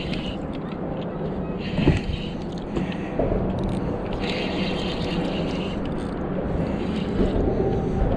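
Spinning reel being cranked in several spells to reel in a hooked sheepshead, each spell a high whirr that starts and stops, over a steady low hum.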